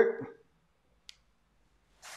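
Near silence after a man's voice trails off, broken by one short faint click about a second in.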